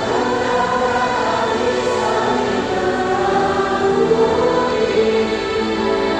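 A church choir singing a hymn in long, held notes, moving slowly from chord to chord.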